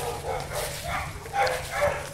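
A dog whimpering and yipping faintly in short scattered sounds, over a low steady hum.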